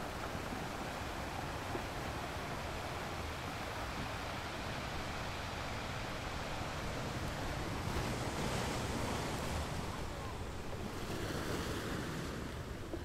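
Ocean surf washing in, a steady rush of breaking waves that swells about eight seconds in and again near the end.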